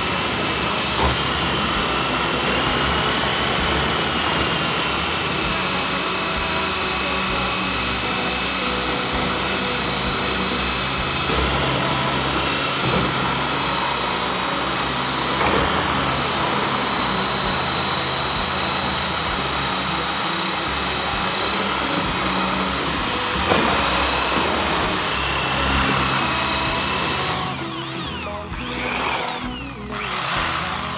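Corded electric drill with a paddle mixer running steadily in a plastic bucket, churning a thick grey mix; its motor whine wavers in pitch as the load shifts, and the sound drops off briefly near the end.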